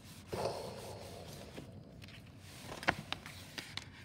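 A hardcover picture book's page being turned: a soft paper rubbing and rustle starting about a third of a second in, then a few light ticks of the page and hand against the book later on.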